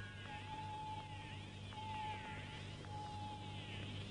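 Electronic science-fiction sound effects: a high tone sweeping down and back up in pitch about once a second, over a steady lower beep that breaks on and off and a low hum.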